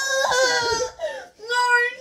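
A girl's high-pitched wailing cry of disgust at eating the dog-food and vomit Bean Boozled jelly beans together: one long held cry, then a short break and a drawn-out "no".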